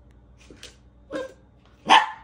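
Dogs playing: a short bark about a second in, then a louder, sharp bark near the end.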